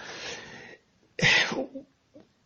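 A man draws a long breath, then gives one short, sharp vocal burst of breath a little over a second in.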